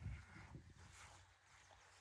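Near silence, with a few faint soft sounds in the first half second.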